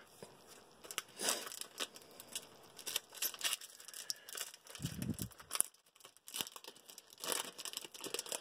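Foil Pokémon card booster pack being torn open and crinkled, a run of irregular crackles.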